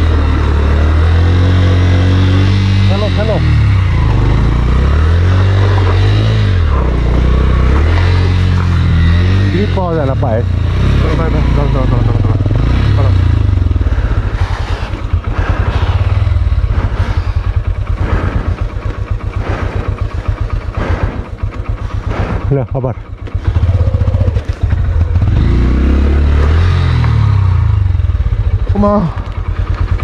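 Honda Livo's small single-cylinder engine running as it is ridden, its pitch rising and falling with the throttle. About halfway through it settles into a slow, even pulse for several seconds, then picks up again near the end.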